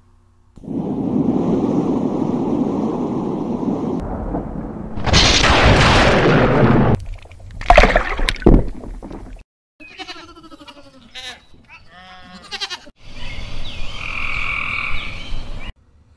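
A run of nature sound effects: wind rushing, then a louder burst of thunder with a few sharp cracks of lightning, then a string of animal calls, and a last noisy stretch that cuts off just before the end.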